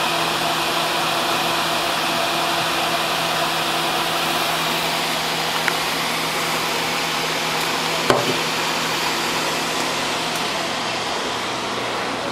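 Steady whirring rush of fans or blowers running, with a faint hum in it. One sharp clack comes about eight seconds in.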